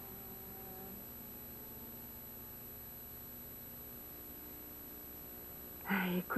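Quiet pause in the soundtrack: a faint steady hum with a thin, high-pitched whine, and a few faint held low tones that fade out about a second in.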